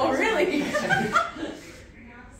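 People chuckling and talking, fading away in the second half.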